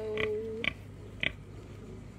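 Pig sniffing with its snout in the dirt: a few short, sharp sniffs spread out over two seconds.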